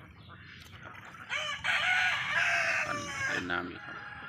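A rooster crowing once, a single drawn-out call of about two seconds starting a little over a second in.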